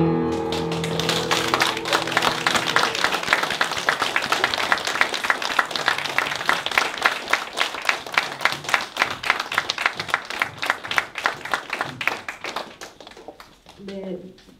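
Audience applauding, a dense patter of hand claps that thins and fades out near the end. A held piano chord dies away under the first couple of seconds.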